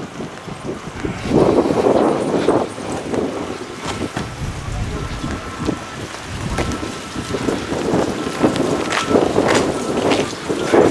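Wind buffeting the microphone in gusts, strongest about a second and a half in and again near the end, with a few sharp clicks between.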